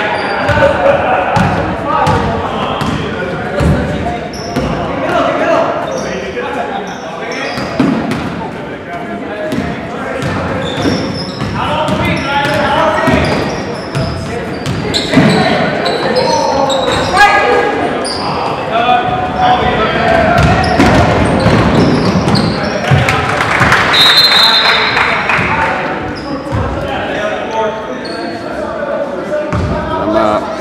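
Basketball game in a gym: the ball bouncing on the court again and again, amid players' and spectators' voices and shouts echoing in the hall, with a brief high-pitched tone at about three-quarters of the way through.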